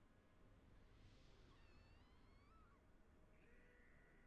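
Near silence: low room hum, with a few faint, high, wavering tones about halfway through and another starting near the end.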